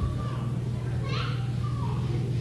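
Faint voices in the background over a steady low hum, in a pause between a man's words at a microphone.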